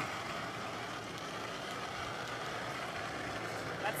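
A granite curling stone sliding down the pebbled ice, a steady even rumble picked up by the ice-level microphones.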